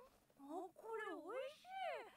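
An animated character's high-pitched female voice, faint, in four or five drawn-out syllables that swoop up and down in pitch: an exclamation of delight at the taste of the food.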